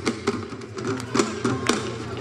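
Live drum-and-brass band playing a fast Senegalese-style percussion rhythm: sharp, uneven drum strokes over low held brass notes.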